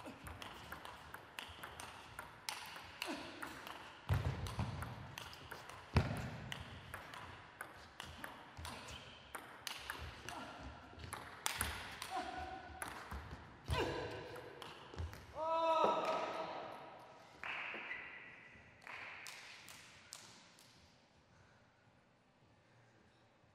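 Table tennis rally: a long run of sharp clicks as the celluloid ball strikes the bats and the table. The rally ends about two-thirds through, and a loud voiced shout follows.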